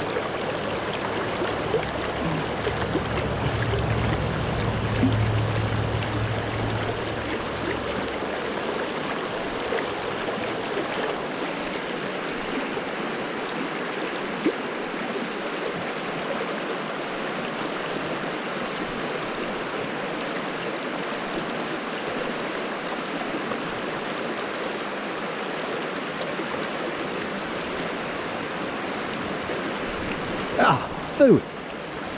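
A small, rocky creek running over stones: a steady rush of water. A low rumble sits under it for the first eight seconds or so, and there is a single sharp tick about halfway through.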